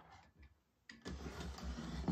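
A metal desk fan being turned by hand on a wooden desktop: a light knock, then from about a second in a scraping rub as its stand shifts across the desk.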